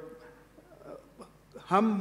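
A short pause in a man's speech with only faint room tone and a small click, then his voice resumes near the end.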